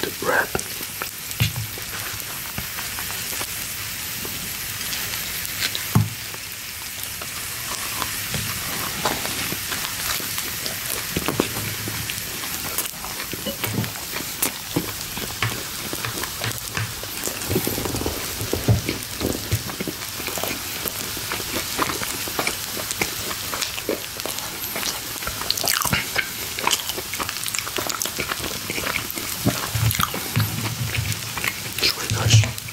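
Food sizzling on a tabletop grill plate, a steady hiss broken by many short crackles and clicks from the food being handled and eaten.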